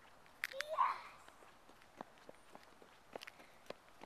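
Faint, irregular light taps and clicks on asphalt, with two sharper clicks about half a second in and a brief rising voice-like sound just after.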